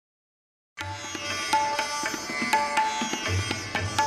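Background music of plucked strings over a low drum, starting about a second in after a moment of silence.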